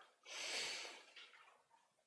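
A single short, noisy breath close to the microphone, starting about a quarter second in and lasting under a second.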